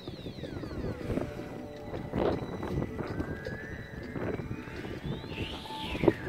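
Wind buffeting the microphone in gusts. Over it come high whistling glides: a few short falling ones at the start, then one long rising call from about halfway that peaks and drops away near the end.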